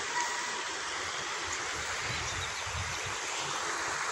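Shallow river water running over a stony bed: a steady rushing trickle.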